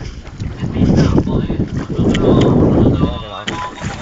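Wind rumbling on the microphone over water sloshing against a small boat's hull, with raised voices near the end.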